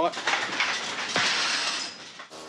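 Steady rushing hiss of the kelp shed's dryer blowing air.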